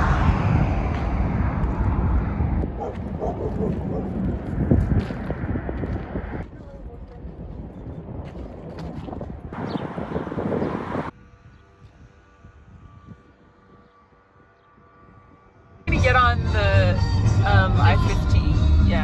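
Wind rumbling on the microphone outdoors, dropping after about six seconds and returning briefly around ten seconds. Then a quiet stretch with faint steady tones, until a voice and music come in suddenly near the end.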